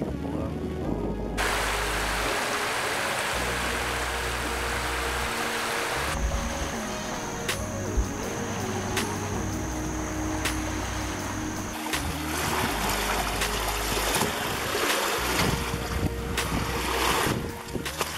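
Background music with a steady bass line, laid over the noise of wind and small waves on the river shore. The wind and water noise jumps in level abruptly a few times, at each cut between shots.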